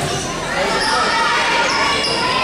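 Echoing gym hubbub: high-pitched girls' voices and spectators calling out across a large hall, with a volleyball bouncing on the court floor. The voices grow louder about half a second in.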